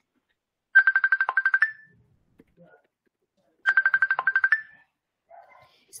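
Telephone ringing: two rings of a fast electronic trill, each about a second long and about three seconds apart.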